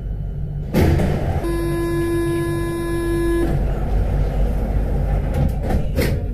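Low running rumble of a Paris Métro line 14 MP05 train, broken about a second in by a sudden loud burst of noise, then a steady buzzing warning tone held for about two seconds.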